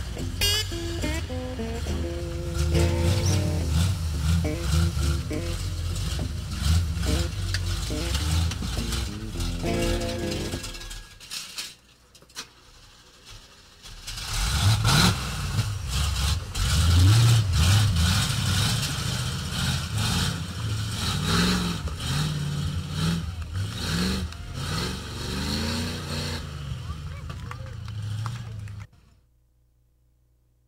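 A lifted Chevrolet 4x4 pickup's engine revving up and down as it crawls over a pile of loose tires, with voices mixed in. The sound drops away for a few seconds around the middle and cuts off abruptly near the end.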